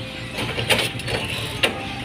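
Bicycle-drawn metal street food cart rattling as it moves along the road: a steady low rumble with irregular sharp metallic clicks and clanks, the loudest about two-thirds of a second and a second and a half in.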